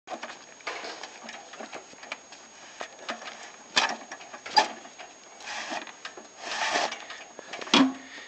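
Manual pallet jack loaded with a concrete mixer being pushed over wooden planks: irregular rattling and scraping, with several sharp knocks, the loudest near the end.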